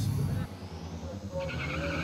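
Drag-racing vehicle's tyres squealing on the strip, a steady high screech starting about a second and a half in, over the vehicle's engine.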